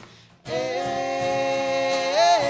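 A faint tap, then about half a second in a group of mixed voices comes in unaccompanied, holding a sustained harmonized chord on one vowel.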